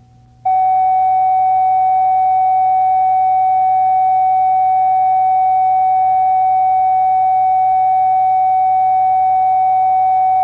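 A loud, steady reference test tone, a single unwavering pitch laid down with the program slate at the head of a videotape. It switches on abruptly about half a second in.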